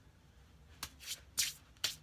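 Hands moving and brushing together in quick gestures: about four short, soft swishes in the second half, after a quiet first moment.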